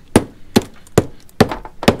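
Hammer striking old dried roofing tar on copper flashing to chip it off: five sharp knocks a little under half a second apart.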